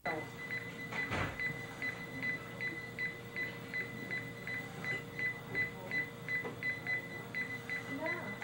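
Tektronix neonatal monitor beeping with each heartbeat, short high beeps at nearly three a second, in step with the infant's heart rate of about 166 a minute, over a faint steady electronic tone. A brief noise comes about a second in.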